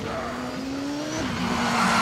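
Cartoon car sound effect: a steady engine tone that climbs slightly in pitch, then drops about a second in as the car slows, followed by a tyre skid as it pulls up.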